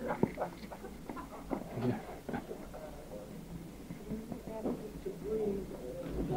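Faint, indistinct voices in a small room, with scattered small clicks and quiet murmuring that grows in the second half.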